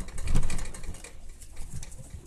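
Puppy tussling with a plush toy held in a hand: irregular soft thumps and scuffling of fabric, loudest about half a second in.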